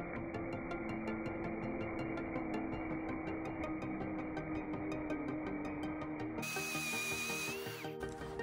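Parkside Performance PSBSAP 20-Li C3 cordless drill running steadily in first gear, boring a large Forstner bit into a wooden beam, with a steady motor whine over background music. About six seconds in the sound changes to a higher whine that drops away just before the end.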